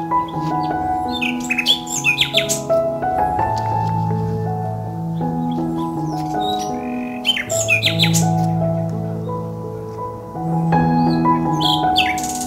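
Soft instrumental background music of slow, held notes, with birds chirping in short clusters about a second in, around the middle and near the end.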